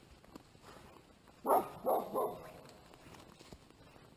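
A dog barking three times in quick succession about a second and a half in, over footsteps crunching in dry leaves.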